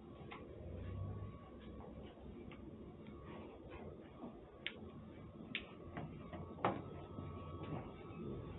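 Faint, irregular clicks and ticks over a low steady hum, with a few sharper clicks a little past the middle, the loudest about two-thirds of the way in.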